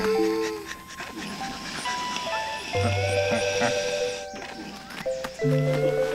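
Instrumental background music: a simple melody of held notes stepping from one pitch to the next.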